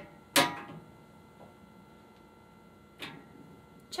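Quick-corner hand tool turning the quick nut a quarter turn clockwise on its threaded post to tighten a loose quick corner: a sharp click with a short ring about half a second in, then a smaller click about three seconds in.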